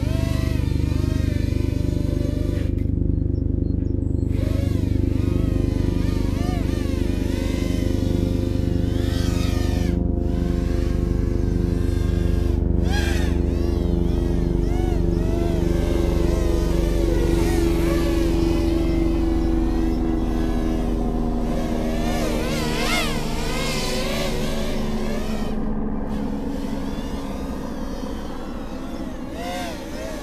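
Small X8 multirotor drone with eight DYS 1306 brushless motors spinning 3-inch-class props in flight, a loud buzzing whine whose pitch wavers up and down constantly as the throttle changes. It fades gradually over the last several seconds.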